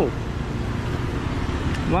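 Steady outdoor street noise with a low traffic rumble underneath.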